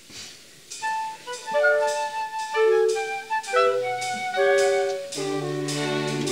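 Orchestra starting a French-style piece: after about a second of quiet, a high melody of held notes begins, and lower sustained notes join in about five seconds in.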